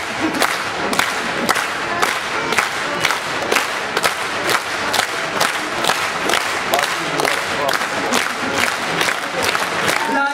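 Concert audience clapping in unison, about two claps a second, with shouting and cheering from the crowd.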